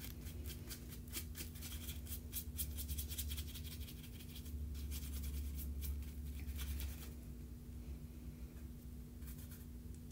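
Brush bristles stroking over cardstock: a quick run of light, scratchy strokes that thin out over the last few seconds, over a low steady hum.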